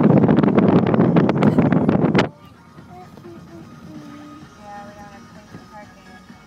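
Loud wind buffeting and road noise from a moving car, picked up out of an open window, cutting off suddenly about two seconds in. After that, a quiet car interior with a few faint short tones.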